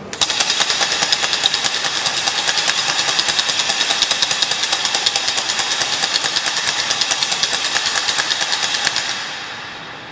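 Altar bells shaken in a rapid, continuous jingling ring for about nine seconds, then dying away near the end. This is the bell rung at the elevation of the chalice right after the consecration.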